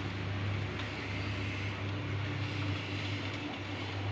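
A motor or engine running steadily with a low, even hum.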